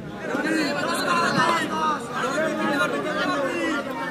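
Several voices chattering at once, overlapping so that no one speaker stands out.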